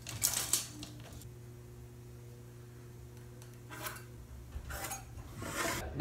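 Short scrapes and clicks of a steel tape measure and pencil being handled against a pine 2x4 as it is marked out. One brief burst comes just after the start and a few more come in the last two seconds, over a faint steady low hum.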